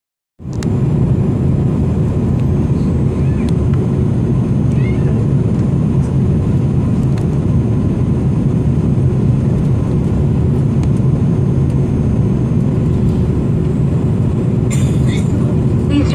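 Steady airliner cabin noise during a low final approach: jet engine and airflow rumble heard from inside the cabin, with a faint steady hum running through it.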